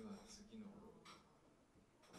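Brief, quiet speech from a man, mostly in the first second.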